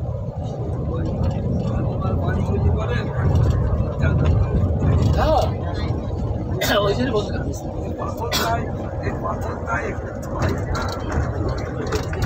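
Steady low rumble of a car driving, heard from inside the cabin, with a person's voice coming in at times over it, mostly in the middle stretch.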